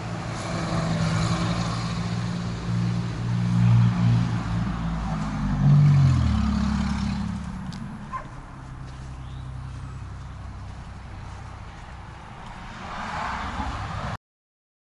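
A motor vehicle passing on a nearby road: its engine hum builds, is loudest about six seconds in where its pitch drops, then fades away.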